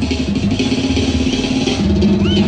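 A banda sinaloense brass band, with tuba, playing music in a busy passage of many short, quick notes.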